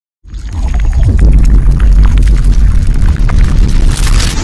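Designed sound effect for an animated logo intro: a loud, deep rumble laced with scattered crackling clicks, swelling into a hissing whoosh at the very end.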